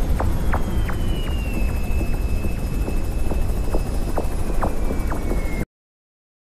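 Loud steady rumble of an aircraft in flight, with a thin high whine that slides slowly down in pitch and faint scattered ticks; it cuts off abruptly shortly before the end.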